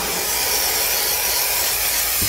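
Aerosol can of spray adhesive spraying glue in one steady hiss.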